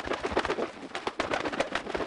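A magpie call laid in as a cartoon sound effect: a fast, harsh rattling chatter made of many rapid clicks.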